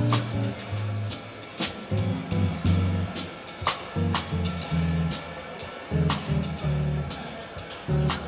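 Live jazz combo playing: electric bass guitar carrying a moving, note-by-note bass line under a drum kit's cymbal and snare accents, with saxophone.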